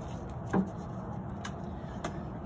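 Low background noise with a short voice-like syllable about half a second in and a single faint click around a second and a half in.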